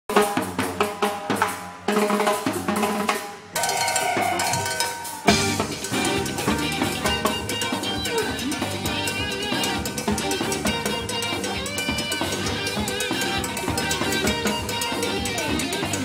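Live band music: a percussion opening of drums and timbales with short breaks between phrases, then from about five seconds in the full band with guitars plays on a steady beat.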